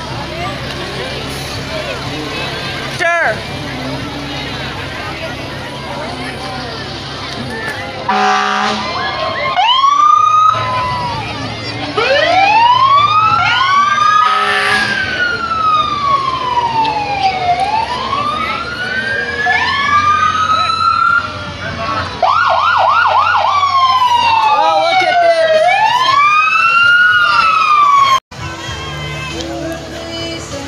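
Fire truck sirens wailing as the trucks pass, several at once rising and falling in pitch, starting about ten seconds in and briefly switching to a fast yelp later on. Before the sirens come in, truck engines rumble with a couple of short horn blasts.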